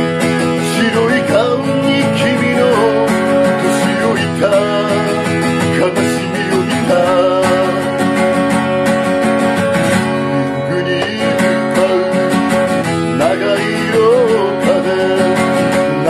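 Steel-string acoustic guitar strummed in steady chords, with a capo on the neck, under a man singing.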